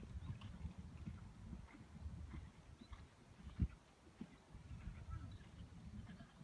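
A horse's hoofbeats on the sand footing of a dressage arena, faint and muffled under a low rumble. One sharp knock stands out about three and a half seconds in.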